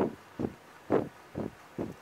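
Fabric rustling in short regular bursts, about two a second, as a needle is worked through it in a hand-sewn running stitch and the cloth is bunched along the thread to gather it. The footage is sped up.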